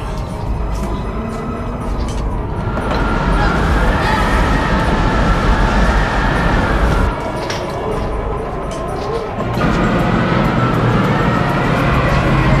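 Tornado wind sound effect: a deep rumble under a whistling howl that rises and falls. It swells louder about three seconds in, drops back about seven seconds in and surges again near ten seconds.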